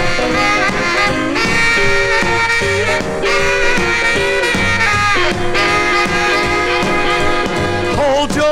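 Instrumental break of a rock and roll record playing from vinyl: horns, saxophone among them, holding notes over a steady beat.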